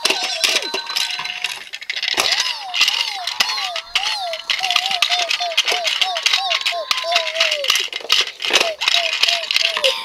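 A siren-like wail rising and falling about twice a second, breaking off near eight seconds and starting again, while plastic toy cars click and rattle as they are pushed.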